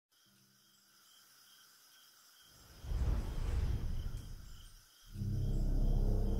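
Cinematic intro sound design: faint night ambience with a soft regular high chirping, then a loud rumbling whoosh swelling in about halfway through, followed by a deep low drone near the end.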